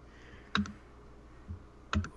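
A few short clicks over low room noise: a quick pair about half a second in, a soft low knock around a second and a half, and one more click near the end.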